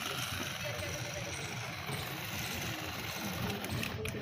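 Small electric drive motors of a hand-controlled robot car running steadily, with crowd chatter behind.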